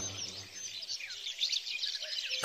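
Birds chirping softly: many short, scattered high calls over a faint, steady background hiss.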